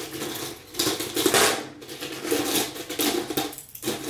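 Metal hair clips clinking and rattling as they are picked up and handled, in several irregular bursts, the loudest a little over a second in.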